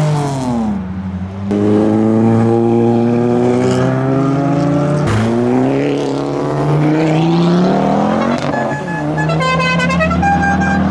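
Car engines accelerating away one after another. The pitch drops as the throttle is lifted at the start, then climbs steadily under power, with a sharp break about halfway. Near the end comes a run of short high tones that step in pitch.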